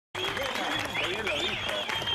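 Applause: hands clapping, with several voices over it.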